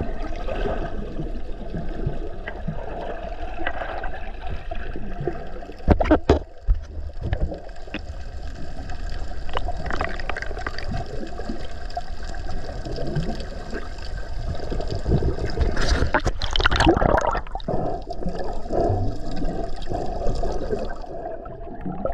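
Moving water gurgling, with a low rumble throughout and a few louder moments, one about six seconds in and a longer one about three quarters of the way through.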